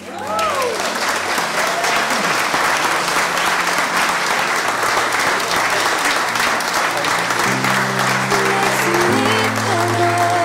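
Church congregation applauding and cheering. Soft instrumental music notes come in over the clapping about seven seconds in.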